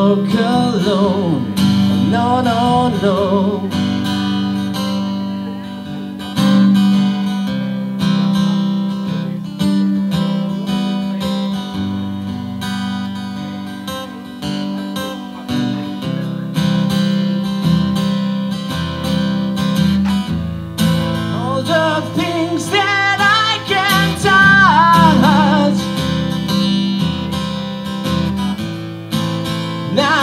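Gibson Southern Jumbo acoustic guitar strummed steadily in an instrumental break. A high, wavering melody line bends over it from about 21 seconds in for several seconds.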